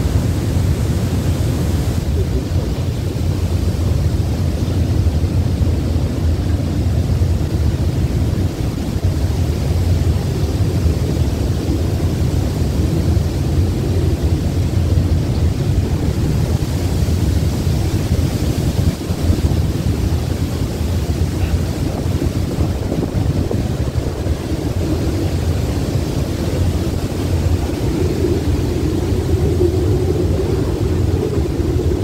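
Cyclone-force wind buffeting the microphone as a loud, steady low rumble, over heavy seas breaking below.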